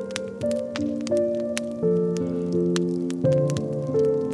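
Slow piano music, single notes and chords held and overlapping, over the scattered pops and crackles of a wood fire.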